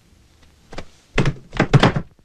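Several heavy thuds: a soft one under a second in, then louder ones in quick succession through the second half.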